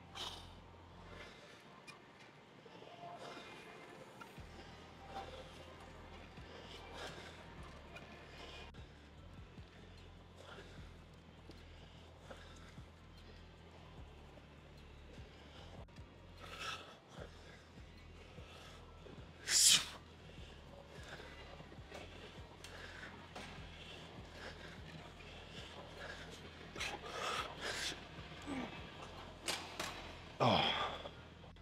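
Quiet gym room sound with faint background music, and a man's sharp breaths during a set of lat pulldowns on a cable-stack machine. The loudest sound is one short, sharp burst about two-thirds of the way through, and a quick run of breaths comes near the end.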